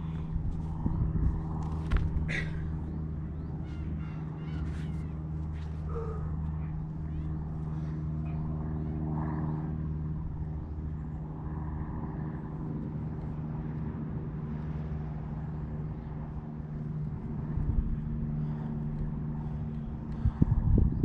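A steady low mechanical hum made of several held pitches, with a few sharp knocks in the first few seconds.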